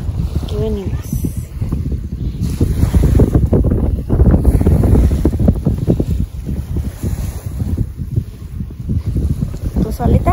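Wind buffeting the microphone: a loud, low, gusting rumble. A short vocal sound comes about half a second in.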